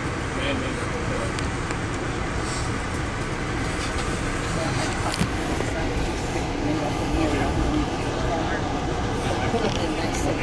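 Steady rumble and rushing noise of an Amtrak passenger train running at speed, heard inside the coach, with faint passenger voices in the background.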